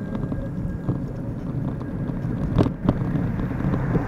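Steady low rumble of wind buffeting the microphone and wheels rolling along a pavement, with two sharp knocks about two and a half and three seconds in.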